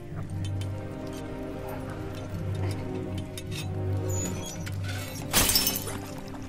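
Dramatic film score music with a few light metallic clinks. Near the end, a loud rushing noise lasting about half a second.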